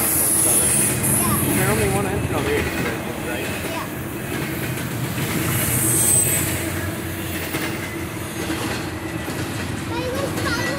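Long double-stack intermodal freight train rolling past close by: a steady rumble of steel wheels on rail. Brief high wheel squeals rise over it about half a second in and again around six seconds.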